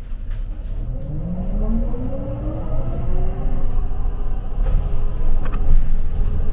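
Shuttle bus pulling away and accelerating: its drive note rises in pitch for about three seconds, then holds steady over a low rumble.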